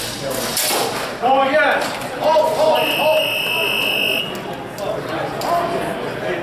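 Electronic timer buzzer at the tournament table: one steady, high beep about a second and a half long, starting about three seconds in. It is the kind of signal that marks time running out on a longsword bout. People call out over it, and there are a couple of sharp knocks near the start.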